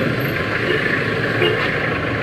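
A minibus engine running close by as the van drives past, over steady street noise.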